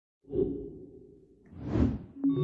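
Quiz-game transition sound effects: a sudden hit that fades away over about a second, then a rising whoosh near the end, marking the switch from the time's-up card to the leaderboard.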